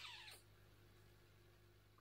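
A single short, faint high-pitched squeal that falls in pitch, lasting about a third of a second at the start, followed by near silence with a low steady room hum.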